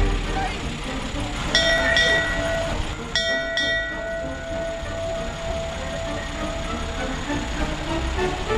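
A steady horn-like tone sounds twice: briefly about one and a half seconds in, then held for about four and a half seconds from about three seconds in, over background chatter.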